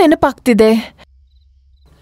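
A woman speaking a few words of dubbed film dialogue that stop about halfway through. The rest is a pause holding only a faint low hum and a few faint high chirps.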